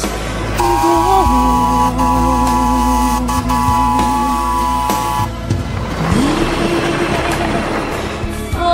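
A miniature live-steam locomotive's whistle sounds as a steady chord for about four and a half seconds, briefly broken twice, over a background song. A hiss follows.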